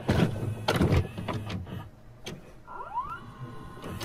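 Videocassette player's tape mechanism: a series of clicks and clunks, then a motor whirring up in a rising whine near the end, as a tape loads to play.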